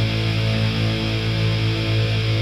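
Final distorted electric-guitar chord of a hardcore song, struck once and held, ringing steadily with no drums.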